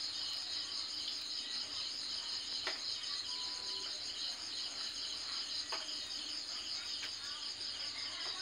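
Crickets chirping in a steady, rapidly pulsing high-pitched chorus, with two sharp clicks, about a third and two thirds of the way through.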